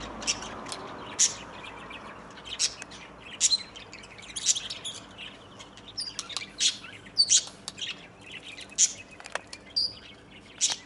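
Birds chirping in an aviary: short, high-pitched chirps repeated at irregular intervals, several a second at times.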